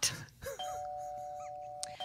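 Electronic quiz chime sound effect: two steady tones sounding together, held for about a second and a half and cut off just before the end, marking 'Deep Thought' as the correct answer.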